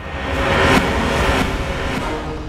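A loud rushing whoosh of noise that swells suddenly to a peak a little under a second in, then slowly eases off.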